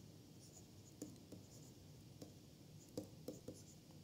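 Faint handwriting with a stylus on a tablet: soft scratching with a few small taps scattered through as letters are written.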